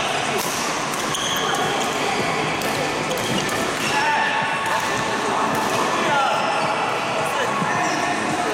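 Doubles badminton rally in a large indoor hall: rackets striking the shuttlecock with sharp cracks several times, and shoes squeaking on the court floor as the players move and lunge.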